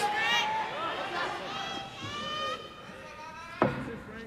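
Men's voices shouting in long, high-pitched calls, with one sharp smack about three and a half seconds in, the loudest sound.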